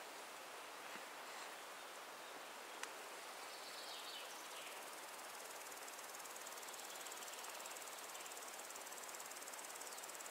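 Faint summer outdoor ambience with a high, rapidly pulsing insect chirring that grows plainer from about halfway through. A single soft click comes about three seconds in, and a faint chirp follows at about four seconds.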